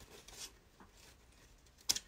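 Scissors cutting through a 2.5-inch wired ribbon tail: mostly quiet, with one short, sharp snip near the end.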